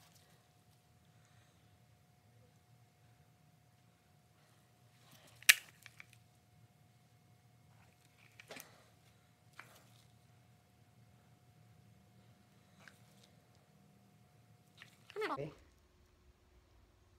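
Quiet room with a steady low hum, broken by a few light clicks and one sharp click about five and a half seconds in, from art supplies being handled at the table. Near the end comes a short voice-like sound that falls in pitch.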